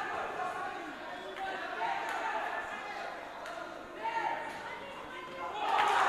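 Indistinct voices in a large hall, with a few faint knocks.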